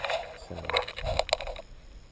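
Rustling and scraping handling noise on the camera's microphone, with several sharp clicks, as the camera is moved against a leafy camouflage suit. It stops shortly before the end.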